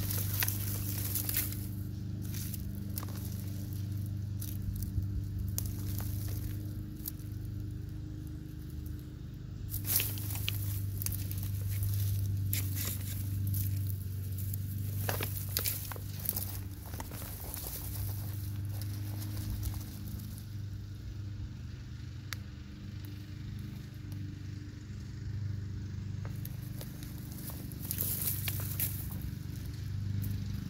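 Hands pulling sweet potato vines and roots out of a container of potting soil: leaves and stems rustling, with scattered crackles and ticks as roots and clumps of soil break loose, over a steady low hum.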